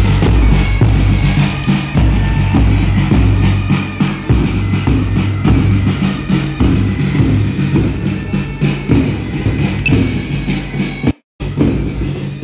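Marching band music, steady held low tones under a beat of drum strokes; it drops out for a split second near the end.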